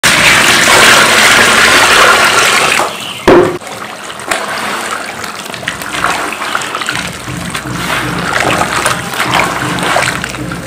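Water poured onto dry cement powder in a plastic basin, a loud rushing pour that stops about three seconds in, followed by a sharp thump. Then hands squish and knead the wet cement paste in the basin, a quieter run of wet squelches and crackles.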